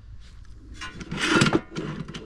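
Black sheet-metal Starlink mounting bracket pieces being handled and shifted against each other, giving a scraping clatter about a second in that lasts under a second.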